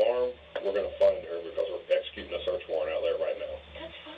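Speech only: a voice in a thin, muffled recording with its upper range cut off, the kind of sound of interview-room or telephone audio.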